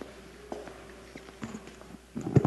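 Faint footsteps on a wooden floor: a few sharp, irregular clicks of a man walking.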